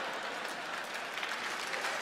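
A large theatre audience applauding steadily.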